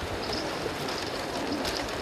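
Many swimmers splashing and thrashing through cold lake water, a continuous dense splashing, with a crowd's scattered shouts mixed in.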